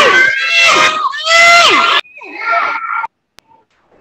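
Young children calling out loudly in high, falling voices over a video-call connection. The calls stop about halfway through, quieter voices follow, and a single click sounds near the end.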